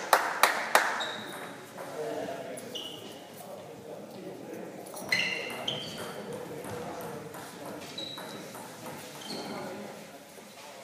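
Table tennis ball bouncing sharply a few times at first, then a doubles rally: the celluloid ball clicks off rubber rackets and the table with short, high, ringing pings, a second or so apart.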